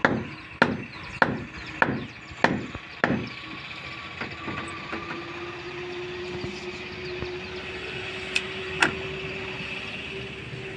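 Hammer blows on wooden shuttering boards, about one and a half a second, six in a row, stopping about three seconds in. Two sharper, lighter knocks come near the end, over a steady low hum.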